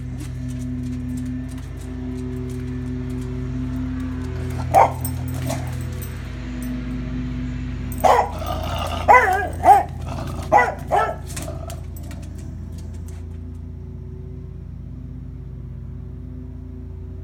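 Beagle barking: one sharp bark about five seconds in, then a run of five or six barks and bays a few seconds later, over a steady low drone.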